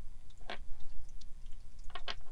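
Small letter dice clicking as they are set down and pushed into a row on a wooden tabletop: one distinct click about half a second in, then a few faint ticks.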